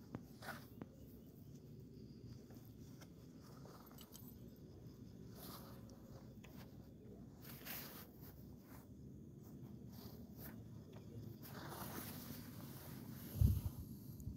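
Faint background room tone with a few small scattered clicks and rustles, and one brief low thump near the end.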